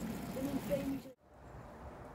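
Faint outdoor background noise with a faint voice in the first second, broken off by an edit about a second in; after it, a quieter steady hiss of open-air background.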